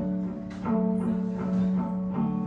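Electric guitar played through an amplifier: a few picked notes that ring out and overlap.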